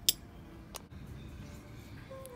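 A metal spoon clinking against a small ceramic bowl as it scoops out thick peanut butter: a sharp clink just at the start and a softer one a little under a second in.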